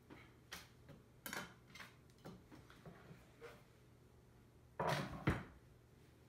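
Faint clicks and scrapes of kitchen utensils being handled on a countertop, then a louder rustle of a paper towel ending in a thump about five seconds in.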